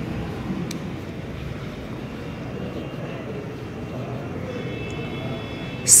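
Steady low rumbling background noise with one brief click about a second in, and faint high steady tones in the last second and a half.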